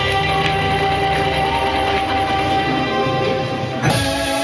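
Recorded dance-mix music playing over the hall's speakers: long held chord tones over a steady low pulse, broken by one sharp hit near the end as the mix changes.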